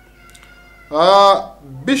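A man's voice: quiet at first, then one drawn-out vocal sound about a second in, with speech starting again near the end.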